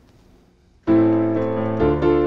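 Quiet for almost a second, then a minor chord struck on a digital piano and held, with a second chord coming in near the end. These are the first chords of the C–F–G progression turned into their relative minors: A minor, then D minor, for a darker, spookier sound.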